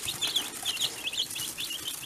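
A brood of young chicks peeping: many short, high peeps in quick succession, overlapping one another.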